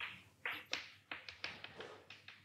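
Chalk writing on a blackboard: a quick run of short taps and scratches as letters are written stroke by stroke.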